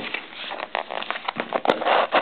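Crackling and rustling of card-box packaging being handled and torn open, with many small sharp snaps.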